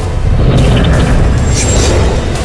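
Loud cinematic logo sting: booming bass under music, with a couple of brief hissing swells.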